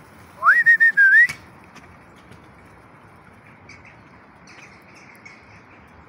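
A single loud whistled call about a second long near the start, sliding up, wavering, dipping briefly and rising again at the end. It sits over a steady background rush, with a few faint high chirps later on.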